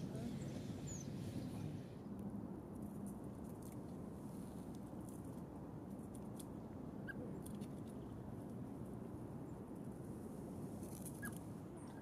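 Faint outdoor ambience: a steady low rumble with scattered soft clicks and a few brief, faint high peeps.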